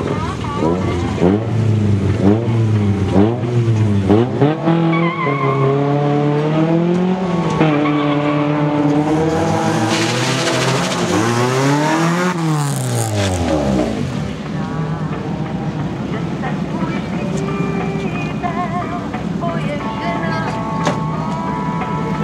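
Nissan Sunny GTI rally car engine, a race-prepared car of up to two litres, revving in repeated sharp blips that rise and fall. It is then held at high revs that climb to a peak, and drops after about fourteen seconds to a steadier, lower running note as the car waits at the start line.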